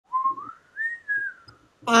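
A person whistling a short tune of a few notes that climbs and then falls back down.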